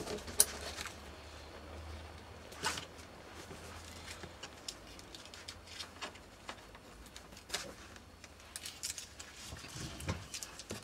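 Brown masking paper and masking tape being handled and pressed down by hand: scattered soft rustles and small clicks, a few louder ones about a second in, near the three-second mark and near the end, over a faint steady low hum.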